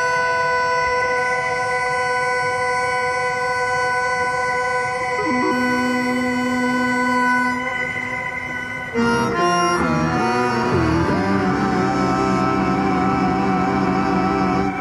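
Improvised music on synthesizer and keyboard instruments through effects: steady held tones, with a lower note added about five seconds in. About nine seconds in it changes suddenly to wavering, gliding tones over a buzzing drone.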